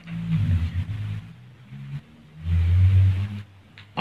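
A man's low, closed-mouth hum or murmur, twice, about a second each, at the pitch of his speaking voice but without clear words.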